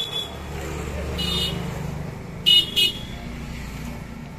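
Road traffic with a vehicle engine running and short horn toots: one about a second in, then two quick toots close together near the three-second mark, the loudest sounds here.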